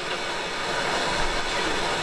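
Hand-held MAPP gas torch burning steadily, a continuous rushing hiss from the open flame.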